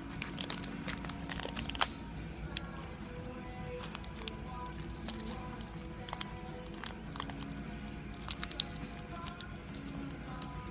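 Foil wrapper of a sports-card pack crinkling and tearing as it is pulled open by hand. It comes in sharp irregular crackles, with the loudest snap about two seconds in, over quiet background music.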